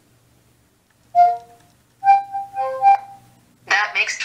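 Electronic chime tones from the Cortana voice assistant on the phones: one short tone about a second in, then a quick run of several chime notes a second later, the assistant's signal that it has taken the spoken question and is answering.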